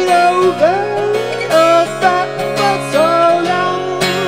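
Acoustic guitar strummed steadily while a man sings sliding, held vocal notes over it.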